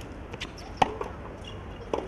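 Tennis rally on a hard court: the ball is struck by rackets and bounces, heard as sharp pops. The loudest comes just before the middle, a smaller one right after it, and another near the end, over a steady arena background.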